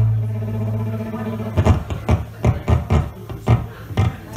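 Live acoustic string music from a small band with fiddle and guitars. A held low note rings and fades over the first second or so, then a steady strummed rhythm of plucked strings begins.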